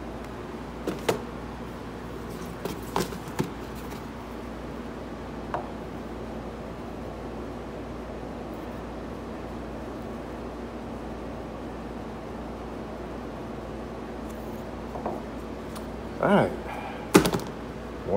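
Steady workshop background hum with a few light knocks and clicks as a knife is handled on a wooden workbench, one louder click near the end. A brief bit of voice comes just before the end.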